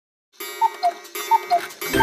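Cuckoo clock calling: a falling two-note 'cuck-oo', heard twice, with a third call starting at the very end. A low hum comes in just before the end.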